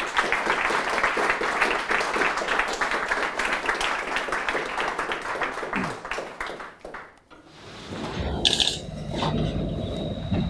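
Audience clapping, a dense patter of many hands that dies away after about seven seconds. In the last few seconds a low rumble rises, with a few faint knocks.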